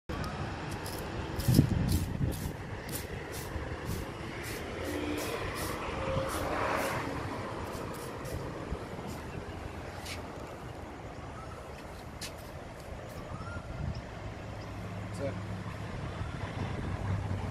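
Trigger spray bottle spritzing fallout remover onto a car's painted panel in quick repeated pumps, each a short sharp hiss, about three a second for the first several seconds, then a few scattered spritzes. A steady low rumble runs underneath.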